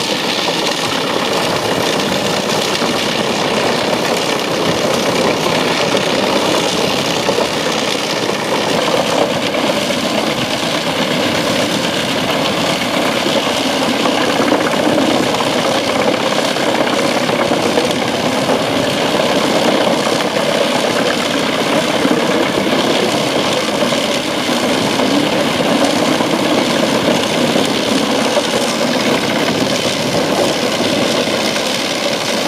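Truck-mounted Eschlböck Biber 84 wood chipper running at full power, loud and steady, as its crane feeds birch logs into the infeed and the chips are blown out of the spout.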